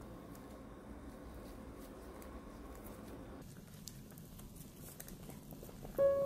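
Faint bubbling of vegetable soup at a boil in a pot, with a few soft small splashes in the second half as pieces of hand-pulled sujebi dough are dropped in.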